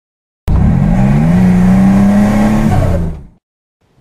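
Car engine revving. It starts abruptly, climbs in pitch, holds a steady high rev, then fades out about three seconds in.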